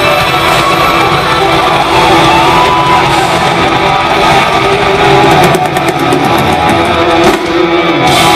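Live rock band playing loud, with electric guitars to the fore, heard from the audience in a concert hall.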